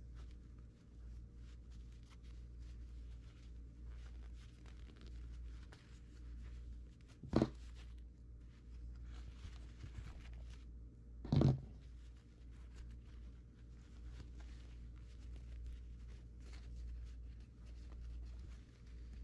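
Canvas fabric rustling with faint small clicks as bolts and washers are worked through it by hand, over a steady low hum. Two sharp knocks stand out, about 7 and 11 seconds in.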